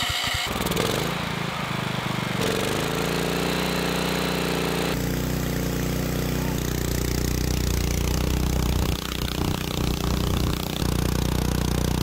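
Single-cylinder 400cc overhead-valve gasoline generator engine running steadily at high throttle through a carbon-fiber muffler. Its pitch steps to a new steady note a few times, about two and a half and five seconds in.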